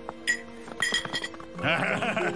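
Cartoon background music with light clinks of cutlery on a dish in the first second.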